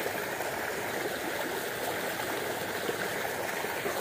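Steady flowing of a small muddy creek's water, an even rushing with some trickling.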